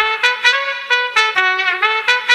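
Trumpet riff in an eletrofunk track: a quick run of short, separate notes played with the bass cut out.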